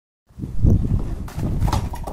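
Bricks knocking together as they are pulled off a pile, with low rumbling from the phone being handled, starting suddenly a quarter second in.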